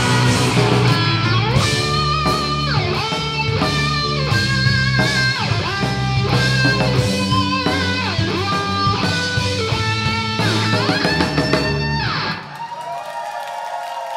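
Live rock band playing the closing bars of a song: electric guitar melody with notes sliding up and down over bass guitar and drums. The full band stops about twelve seconds in, and the level drops.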